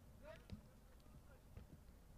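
Near silence from the pitch, with faint distant voices and a soft knock about half a second in.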